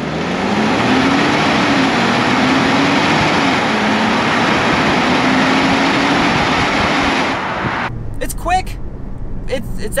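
Mazda CX-90's 3.3-litre turbocharged straight-six under hard acceleration, heard from outside the car under a loud rush of wind and tyre noise on the road. The engine note climbs over the first second and a half, then dips and climbs again a few times as the transmission shifts. The sound cuts off suddenly about eight seconds in.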